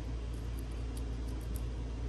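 Steady low room hum with a few faint light clicks as a small pin-tumbler lock cylinder and its cap are handled in the fingers.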